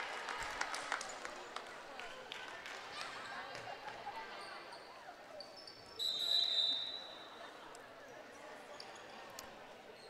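Volleyball gym ambience between rallies: crowd chatter and scattered light knocks of a volleyball bouncing on the hardwood floor, with a referee's whistle blowing for about a second around six seconds in.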